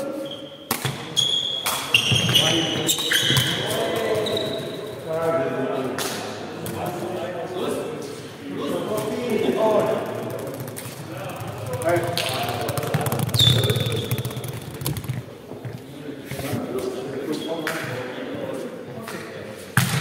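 Woven sepak takraw ball being kicked and bouncing on the hard sports-hall floor, a scatter of sharp knocks, with players' voices calling out, all echoing in the large hall.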